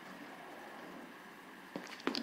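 Quiet room tone: a faint steady hiss, with one small click shortly before the end.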